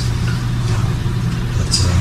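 A steady low mechanical hum, even and unchanging, with a brief soft hiss near the end.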